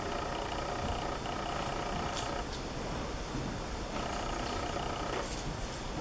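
Steady background hum and hiss of the room between spoken passages, with a few faint clicks.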